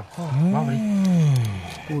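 A man's long, drawn-out vocal exclamation of surprise with no words: one held sound whose pitch rises and then slowly falls away over about a second and a half.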